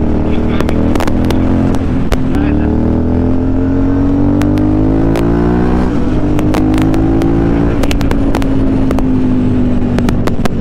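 Aprilia Shiver's V-twin engine pulling under way on the road. Its revs drop about two seconds in, climb steadily for a few seconds, dip again near six seconds, then hold steady.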